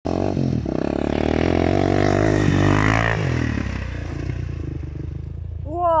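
Suzuki LT-Z400 quad's single-cylinder four-stroke engine running hard under throttle, its pitch climbing around two and a half to three seconds in, then dropping off to a quieter, lower running sound.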